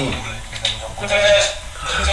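A man's voice, speech or vocal sounds without clear words; no other sound stands out.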